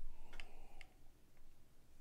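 A man sipping and swallowing beer from a glass: a few faint mouth and throat clicks in the first second, then low room quiet.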